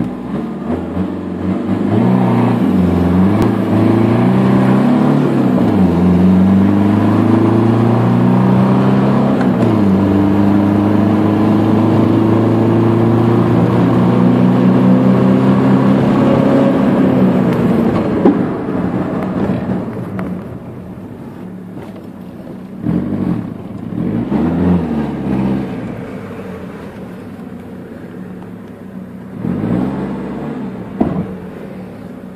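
Car engine heard from inside the cabin, accelerating hard from a standstill through the gears: the revs climb and drop back at upshifts about 3, 6 and 10 seconds in, then pull up slowly in a long last gear to about 18 seconds. There the driver eases off and the engine runs on more quietly.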